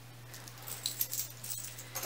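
Gold-tone metal chain-link jewelry clinking and jangling as it is handled: a run of light clicks and rattles, busiest about a second in.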